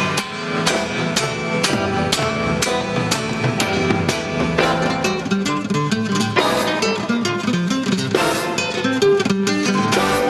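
Nylon-string classical guitar played fast: hard, evenly spaced strummed chords with quick single-note runs between them.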